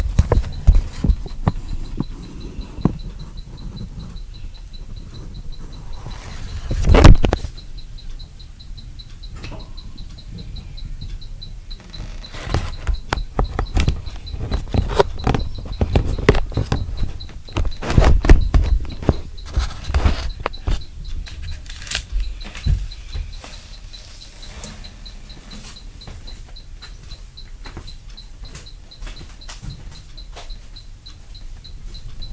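Irregular dull thumps and knocks. The loudest is a single heavy thud about seven seconds in, followed by rapid clusters of knocks from about twelve to twenty-two seconds, and quieter after that. The recorder takes them for a neighbour overhead stomping, jumping and dropping things on the floor.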